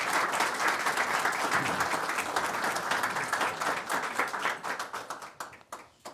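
Audience applauding, the clapping thinning to a few scattered claps and dying away near the end.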